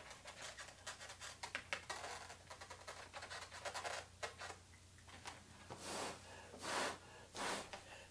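Felt-tip Sharpie marker scratching in small rapid strokes over a latex balloon as it colours in. Near the end come three short rushes of breath.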